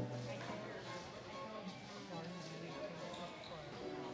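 Crowd voices chattering, with a few faint held musical notes mixed in.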